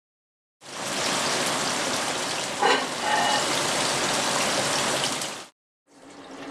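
Food sizzling in hot oil in a frying pan, a steady sizzle that starts about half a second in and cuts off suddenly shortly before the end, with a brief knock near the middle.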